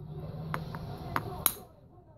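Metal-tipped punch tapping on a stone preform held in a leather pad while shaping it: three or four light clicks, then one sharper strike about a second and a half in with a brief high ring.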